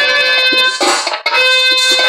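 Live folk stage music through a PA: a keyboard holds steady reedy chords, with no voice singing. About a second in, a short noisy burst and a brief drop in level interrupt it.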